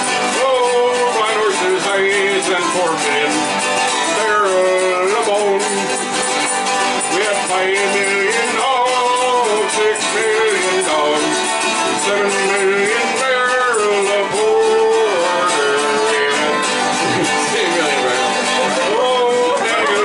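A bouzouki strummed steadily while a man sings a folk song into a microphone.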